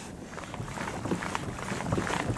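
Steady low noise of a small fishing boat under way while trolling: water moving past the hull with some wind, growing slightly louder toward the end.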